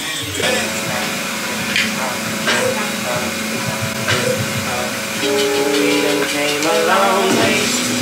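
Background music with held, sustained notes.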